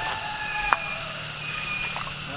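A steady hiss with a few faint, steady high tones, broken once by a single sharp click about two-thirds of a second in.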